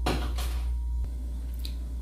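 A silicone spatula stirring a thick cream mixture in a metal saucepan: a short scraping clatter at the start, then softer stirring sounds over a steady low hum.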